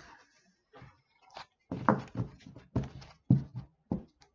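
A quick series of short knocks and taps, about six in two and a half seconds, from oracle cards being laid down and handled on a tabletop.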